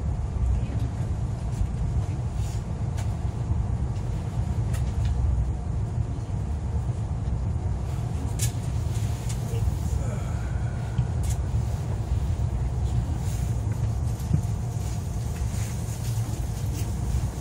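Steady low rumble of an ITX-Saemaeul electric multiple unit's running gear, heard inside the passenger car as the train rolls along a station platform, with a few faint light clicks.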